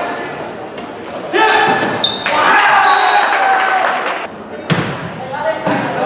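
Volleyball rally in a large gym: a few sharp slaps of the ball being hit, short high squeaks of sneakers on the court floor, and players' and spectators' voices calling out.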